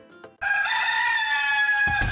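A rooster crowing once, a single long call starting about half a second in, used as a wake-up sound effect.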